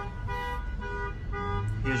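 A repeating electronic warning chime from the Ford Explorer's cabin. The same steady tone pulses about twice a second.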